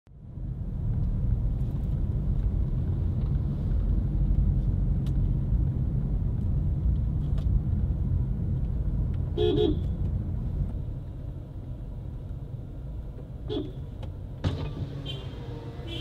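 Steady low road rumble of a car heard from inside its cabin, with one short car-horn toot a little past the middle and a fainter short tone near the end.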